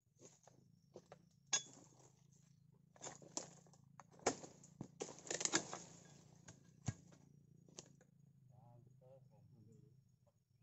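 A dodos palm chisel on a pole striking and cutting into the base of oil palm fronds: a run of sharp knocks and cracks, densest and loudest about five seconds in, over a low steady hum.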